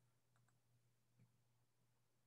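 Near silence with a faint low hum, broken about half a second in by a faint double click of a computer mouse or key advancing the presentation slide.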